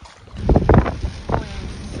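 Wind and rain buffeting the microphone through an open car window, heard as loud rumbling gusts after a quieter first half second.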